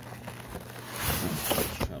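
Clear plastic packaging tray rustling and scraping as hands pull an HO-scale model locomotive out of its box, loudest from about a second in.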